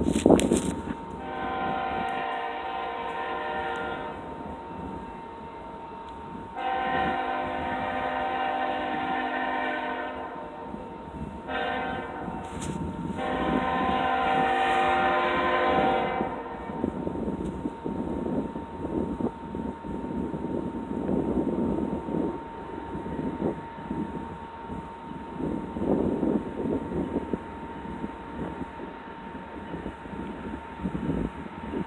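Freight locomotive air horn, distant, sounding the long-long-short-long grade-crossing signal; each blast is a chord of several steady tones. After the last long blast, unsteady low rumbling noise carries on.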